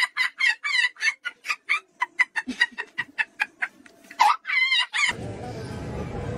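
A rapid run of short clucking calls like a hen's cackle, about four a second, ending in a couple of longer, wavering calls. It cuts off abruptly about five seconds in, giving way to steady street noise.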